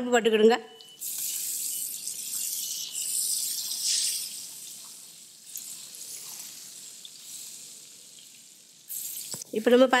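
Hot oil sizzling in a large aluminium cooking pot as browned onions and green chillies fry in it. The sizzle starts suddenly about a second in, is loudest for the next few seconds, then dies down gradually.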